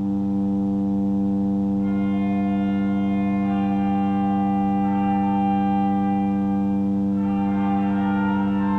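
Pipe organ playing a slow piece: a low bass note held throughout, with higher melody notes entering about two seconds in and changing every second or two, in a reverberant church.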